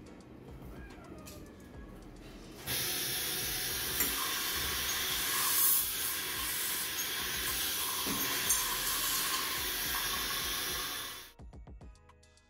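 Dental equipment at the patient's mouth hissing loudly and steadily. It starts abruptly about two and a half seconds in and cuts off about a second before the end, where music begins.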